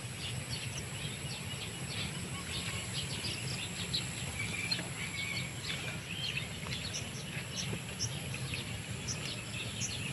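Open-field ambience: many short bird chirps and calls scattered throughout, over a steady high insect drone and a low rumble.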